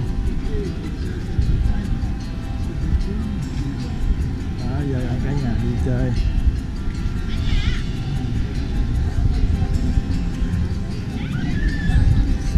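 Background music with steady held tones over low rumbling noise, with snatches of voices and a brief high wavering sound about seven and a half seconds in.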